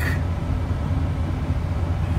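A semi truck's diesel engine idling steadily, a low rumble heard from inside the cab.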